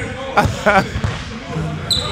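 A basketball bouncing on a hardwood gym court, with a couple of sharp knocks, among players' voices.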